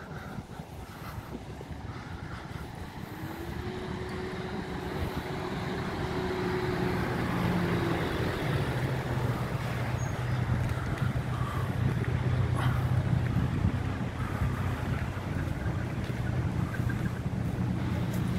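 A heavy cargo truck's engine running at idle: a steady low hum that grows louder over the first several seconds and then holds.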